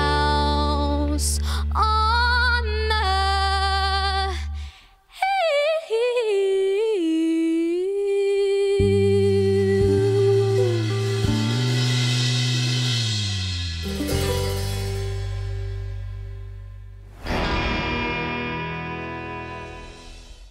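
A country band playing the end of a song: bass, acoustic guitar and a long held melodic line with vibrato, the bass dropping out briefly about five seconds in and walking down near the middle. About seventeen seconds in the band gives way to a short outro sting that fades out.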